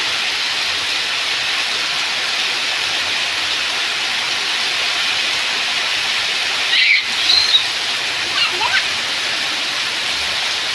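Heavy rain beating steadily on a concrete yard and roof, with runoff pouring off the roof edge and splashing onto the ground. The rain briefly drops out just before seven seconds in, and a few short high sounds follow it.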